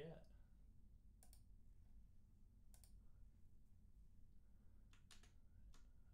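About five sharp computer mouse clicks, spaced irregularly a second or so apart, over a low steady hum; otherwise near silence.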